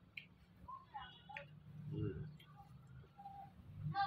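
Fingers mixing rice on a plate by hand, giving a few faint, light ticks, with a faint voice in the background.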